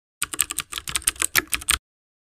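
A rapid run of keyboard typing clicks, about ten keystrokes a second, that cuts off suddenly just before the end: a typing sound effect laid under the title text.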